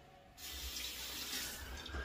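Bathroom sink tap turned on about half a second in and left running, a steady rush of water into the basin.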